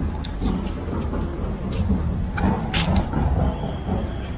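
Steady low rumble of outdoor street ambience, with a few short clicks.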